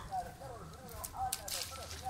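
Faint, short, voice-like calls in the background, with brief rustling of the tree's leaves about one and a half seconds in as the fruit is handled.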